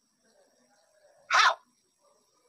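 One short, sharp vocal burst about a second and a half in, with near silence around it.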